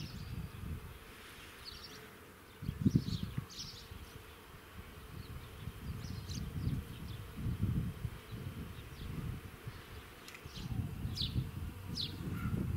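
Bees buzzing around a blossoming fruit tree, the buzz swelling and fading as they fly close by and away. Short high bird chirps come now and then.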